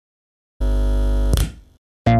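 A single sustained, buzzy electronic tone starts about half a second in, holds for under a second, then breaks off with a brief swish and fades away.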